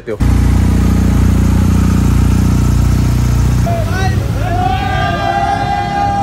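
A motorcycle engine running loud and steady. A little past halfway it drops back, and high, sliding singing voices come in over it.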